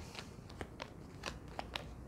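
A deck of laminated oracle cards being handled and shuffled by hand: a quiet run of short, irregular clicks and snaps of card stock.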